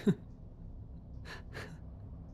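A man's breath sounds: a short voiced huff with a falling pitch right at the start, then two quick, sharp breaths a little over a second in, like the first stirrings of a bitter laugh.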